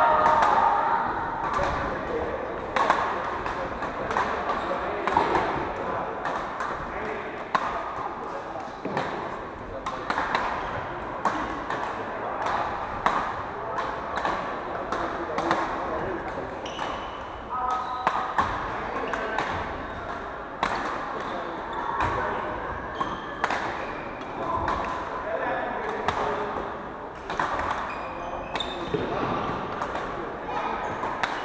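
Badminton rackets striking shuttlecocks in rallies on several courts: a run of sharp clicks at irregular intervals, ringing in a large hall.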